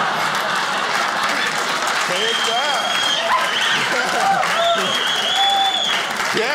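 Audience laughing and applauding: steady clapping throughout, with individual laughing voices and high calls rising over it from about two seconds in.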